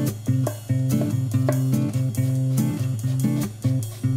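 Background music: a guitar-led instrumental with sustained bass notes in a repeating pattern.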